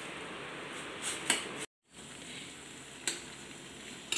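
Water bubbling at the boil in a stainless-steel saucepan of hibiscus flowers while a spoon stirs, with a few light clinks of the spoon against the pan. The sound cuts out completely for a moment near the middle.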